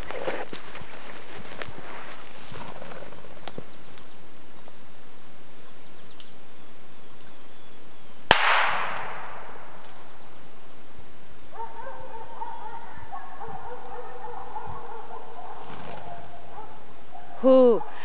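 A single gunshot about eight seconds in, sharp, with a tail that dies away over about a second. From about two-thirds of the way through, a steady ringing of several held tones lasts for a few seconds.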